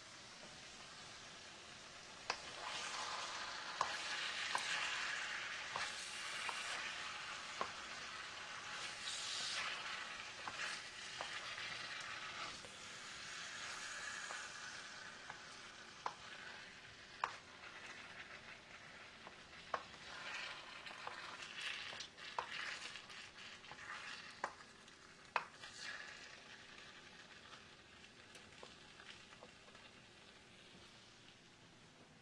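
Chicken, broccoli and yellow pepper sizzling in a hot wok as a wooden spoon stirs and scrapes them, the sizzle starting about two seconds in, swelling and ebbing with each stir and dying down near the end. Sharp knocks of the spoon against the pan come every few seconds.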